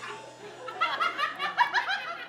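A man laughing: a quick run of short, repeated laughs beginning about half a second in.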